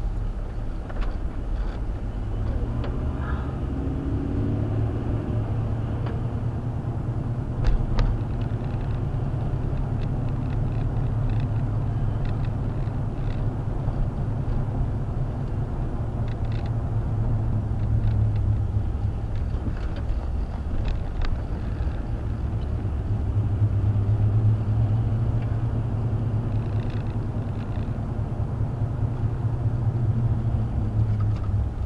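A car driving at low town speed, heard from inside the cabin: a steady low rumble of engine and road noise, with one sharp click about eight seconds in.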